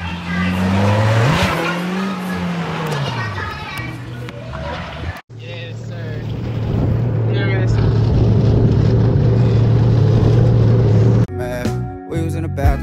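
A jet ski engine running at a steady high speed, growing louder over about six seconds, with voices shouting over it. Before it, an engine rises and falls in pitch for about five seconds, then the sound cuts off abruptly.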